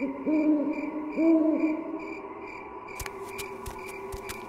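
Cartoon owl hooting twice, about a second apart, each hoot rising and falling in pitch, over a steady night ambience with a faint, evenly pulsing high chirp. Quick, sharp plucked notes of music come in about three seconds in.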